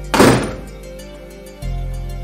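A door shutting with a single heavy thud just after the start, over background music with deep sustained bass notes that change near the end.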